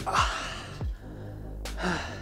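A man gasping and breathing out hard, exhausted after a set of leg raises: one long breath right at the start and another near the end. Electronic background music with a deep kick drum runs underneath.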